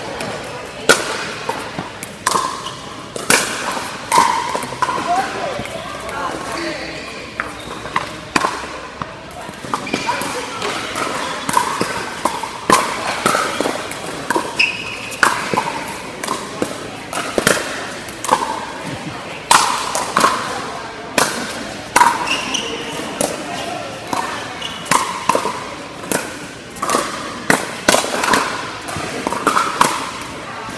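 Pickleball paddles striking the hard plastic ball: an irregular string of sharp pops, each with a short ring and echo in the large indoor hall, going on throughout as rallies are played.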